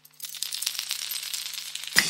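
Opening of a tech house track: a fast, dense rattling percussion texture that swells in about a quarter second in, over a faint low held tone.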